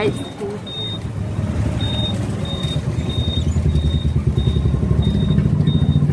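Street traffic heard from a moving e-rickshaw: a steady low motor and road rumble that grows louder toward the end, with a short high beep repeating about every two-thirds of a second.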